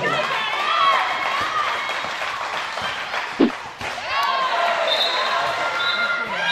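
Indistinct voices in a handball hall, with a single ball bounce about three and a half seconds in.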